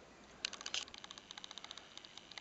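A rapid, uneven run of small sharp clicks, starting about half a second in.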